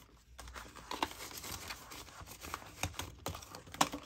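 Paper dollar bills being handled and sorted into a clear plastic cash-binder envelope: a continuous run of soft crinkles and light clicks.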